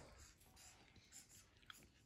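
Near silence, with faint scratching of markers being drawn on paper and a light tick near the end.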